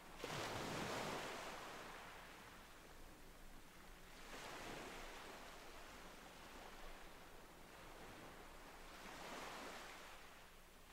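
Faint ocean waves washing in and drawing back, a soft swell about every four to five seconds, forming a background sound bed.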